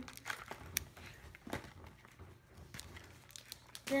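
Plastic candy wrapper crinkling as it is handled, with a few light clicks in between.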